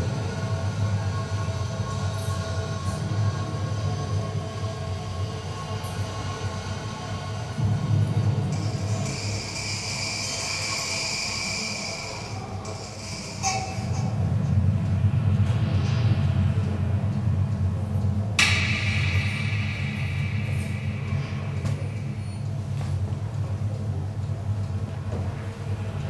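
A continuous low rumble with several steady tones underneath, like a mechanical or electronic soundscape. A hissing, high stretch comes in the middle and stops, and a sudden bright sound enters about three quarters through.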